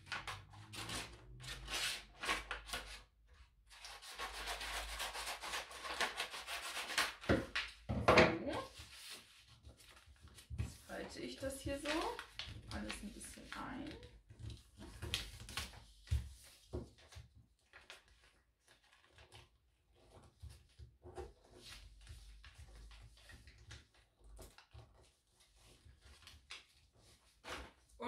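Gift-wrapping paper being cut with scissors and rustled, then folded and creased flat on a wooden table, with one sharp knock on the table about eight seconds in. The paper handling is quieter in the second half.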